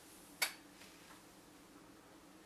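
A single sharp click about half a second in, then a few faint ticks, as the small clay horse on its wooden skewer is picked up and handled, over quiet room tone with a faint steady hum.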